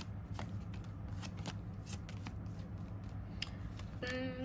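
Tarot cards being handled and shuffled off-picture: scattered soft card clicks and slides over a steady low hum.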